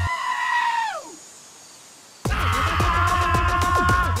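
Dubstep track built from screaming sheep and goat samples. The beat cuts out under a long held animal scream whose pitch slides down and fades about a second in; after a second's lull the heavy bass and drums come back suddenly under another long held cry.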